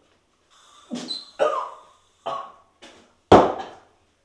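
A man's short wordless vocal sounds, several in a row, the loudest and sharpest about three seconds in.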